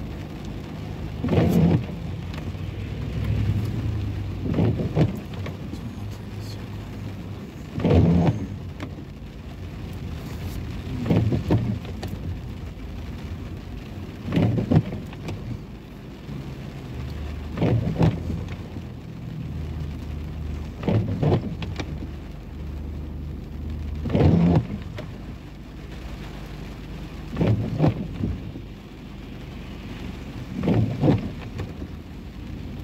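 Car windshield wipers on an intermittent setting sweeping about every three seconds, nine sweeps in all, over steady rain on the car and a low steady hum from the idling car.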